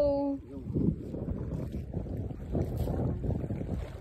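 A loud held vocal note cuts off about half a second in. It is followed by wind buffeting a phone microphone, mixed with uneven rustling and knocks from handling.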